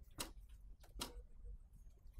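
A Honda Win 100 motorcycle's two-stroke single engine idling faintly under the rider, with two sharp clicks, one near the start and one about a second in.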